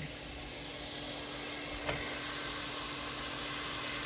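Chopped onion, tomato, garlic and ginger sizzling in oil in a pot, a steady hiss, with one light knock about two seconds in as raw chicken pieces go into the pot. A faint steady hum runs underneath.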